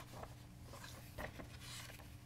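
Faint handling of paper pages at a lectern: a few short, soft rustles and taps, over a steady low room hum.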